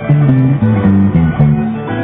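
Live country band playing an instrumental passage on acoustic and electric guitars, the notes changing every quarter second or so over a strummed backing.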